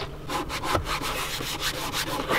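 A cloth rubbed back and forth over the hard plastic of a van's centre console, wiping it clean with isopropyl alcohol, in quick repeated strokes.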